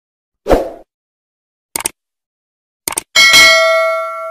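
Subscribe-button animation sound effect: a low thump, two quick mouse double-clicks about a second apart, then a bright notification-bell ding that rings out slowly.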